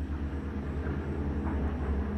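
A low, steady mechanical rumble with a fast, even pulse, running in the background.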